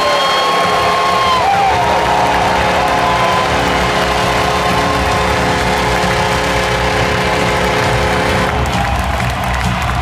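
Large arena crowd cheering loudly and continuously over a held musical chord, which cuts off about a second and a half before the end.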